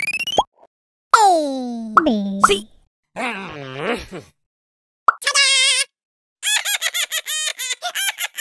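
Cartoon sound effects and character vocal noises: a rising whistle-like tone cut off by a pop, a long falling glide, a wavering "hmmm" hum, then after another pop a warbling tone and a quick run of short repeated chirps near the end.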